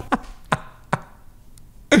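A man's breathy laughter: three short, sharp bursts in the first second, then quieter.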